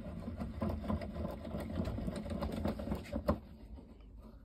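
The jaw screw of a Stanley MaxSteel multi-angle vice being wound by its sliding handle bar: a rapid, continuous mechanical clicking rattle, with one louder click a little over three seconds in. The screw, which has no added lubrication, is starting to bind.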